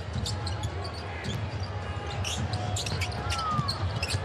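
Live basketball game sound on a hardwood court: a ball being dribbled, with scattered short knocks over a steady arena crowd murmur. A brief sneaker squeak comes about three seconds in.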